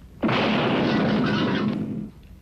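Cartoon explosion sound effect: a sudden loud blast about a quarter-second in that rumbles on for over a second and a half before dying away. It stands in for a starting pistol, fired from a pointed finger.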